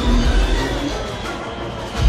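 Orchestral battle music from a film score, with a deep rumble underneath that fades away about a second and a half in.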